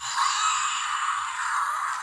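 Fingerlings Untamed Infrared T-Rex toy giving an electronic roar from its small built-in speaker, set off by being stroked from nose to back of head. It starts suddenly and runs on steadily, a harsh, hissy roar with no bass.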